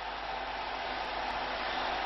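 Steady stadium crowd noise on an old television football broadcast, heard as an even hiss-like roar with no distinct cheers or shouts.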